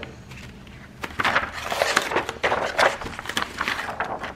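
Clear plastic carrier sheet of red glitter heat-transfer vinyl crinkling and rustling as it is lifted and shifted into place. The rustling starts about a second in and comes in irregular bursts.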